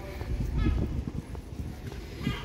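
Pedestrian-street ambience: irregular footstep-like knocks on paving with people talking nearby.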